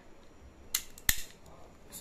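Full-metal cap revolver being handled as its red plastic cap ring is loaded and the swing-out cylinder is closed: a few sharp metallic clicks, the loudest about a second in.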